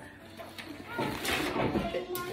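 A person biting and chewing a crispy fried wonton. The crunchy chewing starts about a second in, over faint voices.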